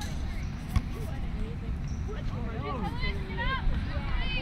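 Voices shouting and calling across a youth soccer field, with high calls that rise and fall, mostly in the second half, over a steady low rumble. One sharp thump about three quarters of a second in.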